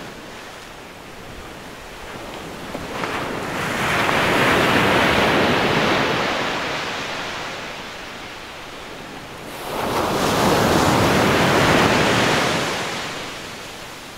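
Ocean surf on a sandy beach: two waves swell up and wash in, the first about four seconds in and the second about ten seconds in, each fading away again.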